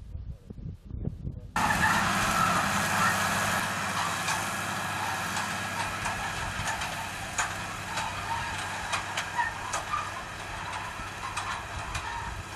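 Wind rumbling on the microphone, then, cutting in about a second and a half in, a tractor engine running steadily under load as it pulls a disc harrow through a tobacco field, with scattered clicks and clanks from the harrow.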